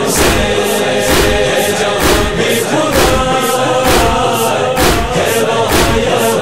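Nauha (Shia lament) with a chorus of voices chanting a sustained refrain over a steady beat of about two strokes a second, with no solo lyric in this stretch.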